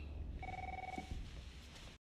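A single steady electronic tone, like a phone beep, lasting about half a second and starting about half a second in, over a faint low background rumble.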